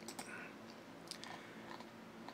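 A few faint, scattered clicks over a low, steady room hum.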